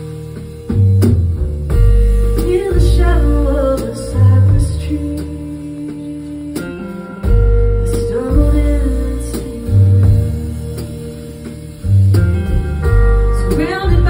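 A woman sings a slow song over her own amplified archtop guitar. Deep bass notes are struck every second or two, and chords ring on between the sung phrases.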